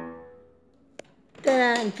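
The final chord on an upright piano ringing and fading away, ending the piece. A single short click follows about a second in, and a voice starts speaking near the end.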